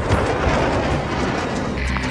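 Fighter jet in flight, a steady rushing roar, with music underneath.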